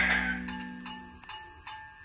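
The end of an intro jingle: a repeated ringing chime dying away over a low held note, which stops a little past halfway.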